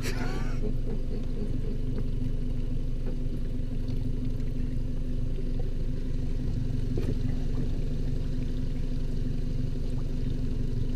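A motor boat's engine idling steadily, a low, even hum. A few words are spoken at the very start.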